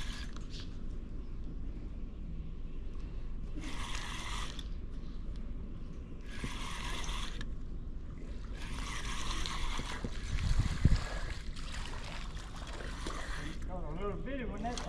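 Spinning reel cranked in several short bursts of a second or two while a hooked catfish is reeled up. Underneath is a steady low rush of water or wind, and a single knock comes about eleven seconds in.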